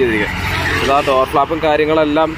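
Speech over a steady low rumble of road traffic.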